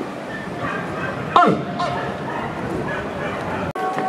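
Outdoor crowd murmur with one short high cry that falls steeply in pitch about one and a half seconds in. The sound breaks off briefly near the end.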